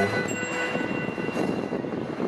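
A quiet passage in a live acoustic folk band's set: the fuller playing drops away at the start, leaving one faint high held note over a hissy wash of noise.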